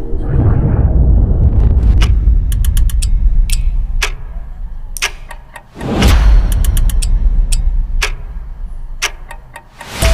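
Film-trailer sound design: a deep low boom and rumble, overlaid with sharp ticking clicks that come roughly on a beat and sometimes in quick runs. About six seconds in, a swelling whoosh leads into a second low hit, which fades away near the end.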